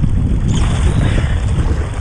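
Fast river current rushing and splashing around an inflatable kayak, with a heavy wind rumble on the microphone.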